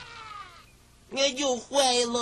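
Two drawn-out pitched vocal calls, the first short and wavering, the second longer and held level before it falls away.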